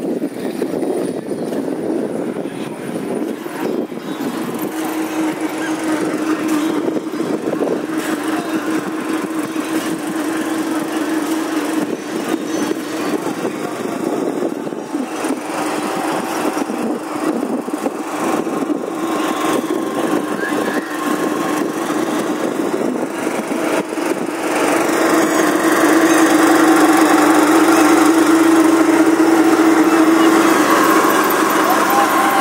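A steady engine drone over constant background noise, getting louder in the last few seconds.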